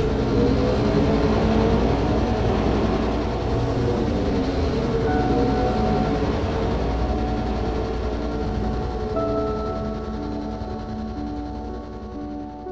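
A sci-fi podracer engine sound effect: a steady, loud rumbling roar that slowly fades away. Sustained music notes come up beneath it in the second half.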